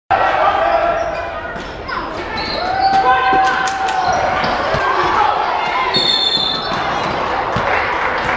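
A basketball dribbled on a hardwood gym floor during a youth game, with a few sharp high sneaker squeaks and players and spectators shouting, all echoing in a large gym.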